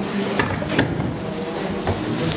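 A few knocks and clatters of stage equipment being handled and moved, over low room noise.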